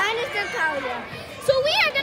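Children's voices: a young girl talking, with high-pitched child speech running through.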